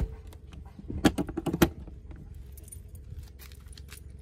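Keys on a ring jingling as they are brought to a camper door lock, with a few sharp metallic clicks about a second in.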